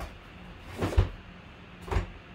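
Two short knocks or thumps, a louder one about a second in and a smaller one near the end, over a faint steady low hum.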